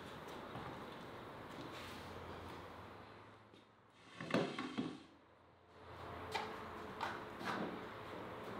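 Fresh watermelon being handled and eaten: a loud wet bite about halfway through, then a few softer clicks and knocks of slices on a wooden cutting board.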